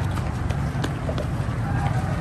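Many runners' shoes slapping on concrete, a quick irregular patter of footsteps over a steady low rumble.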